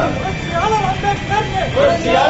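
A group of men chanting a protest slogan in rhythm, the same short phrase repeated over and over.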